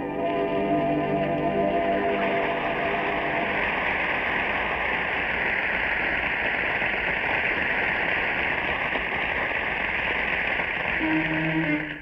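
The last held chord of a vocal dance-band song fades out within the first few seconds. A steady, even rushing noise follows, and pitched sound comes in again just before the end.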